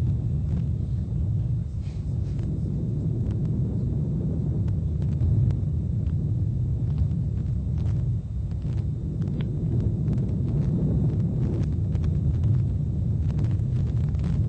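Atlas V rocket's RD-180 first-stage engine in powered ascent, heard from the ground as a steady deep rumble with scattered sharp crackles.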